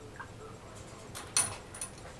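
A hand dipping into a pot of whey and rice-sized Parmesan curds to scoop a sample, making a few short, sharp splashes and clicks in the second half. The loudest comes about halfway through.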